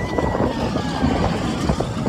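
Seven Dwarfs Mine Train roller coaster running along its track: a dense rattling rumble, with a thin high tone that slowly falls.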